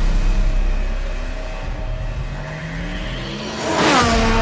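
A racing car engine revving, its pitch climbing over a couple of seconds, mixed with cinematic trailer music. Near the end a loud rising whoosh swells up.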